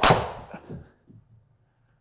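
TaylorMade Stealth 2+ driver, set to 11.5° loft, striking a golf ball: one sharp crack at impact that rings out over about half a second, followed by a few faint knocks within the next second.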